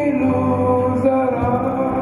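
Amplified vocal group singing long, held notes through stage microphones.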